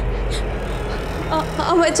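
A woman starting to sob about one and a half seconds in, her crying voice wavering up and down over a steady low hum.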